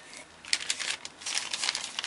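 Paper crinkling and rustling as a newspaper-print paper bag is lifted from a cardboard box and handled. It starts about half a second in and goes on in quick irregular crackles.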